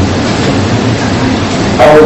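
A loud, steady noisy hiss and rumble with no clear tones, the kind of noise a recording carries under its voice.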